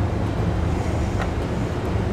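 A steady low machine hum in the background, with one faint click about a second in.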